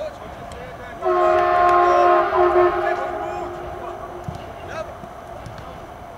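A horn sounding one steady chord of several tones, starting abruptly about a second in, loud for about two seconds, then fading away over the next second or so.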